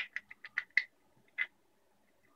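Small plastic clicks from a 3D-printed clamp being handled and twisted: a quick run of about half a dozen ticks in the first second, then one more about a second and a half in.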